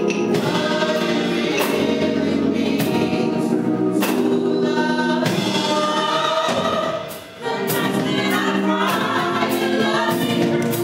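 Small gospel choir singing in harmony, led by a conductor, with a brief break in the singing about seven seconds in.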